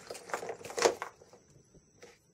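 Small metal-plate selenium rectifier stacks clattering and scraping on a wooden workbench as they are pushed around by hand. There is a quick run of rattles in the first second, the loudest just before it settles.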